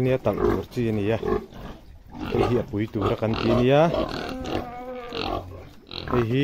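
Domestic pigs grunting in their pen, under a man talking.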